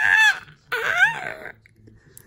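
A woman's high-pitched playful squeals, two of them: the first breaking off near the start, the second rising and then falling in pitch, about a second long.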